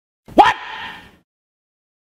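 A voice exclaiming a single short 'What', rising sharply in pitch, with the sound ringing on briefly after it and dying away just over a second in.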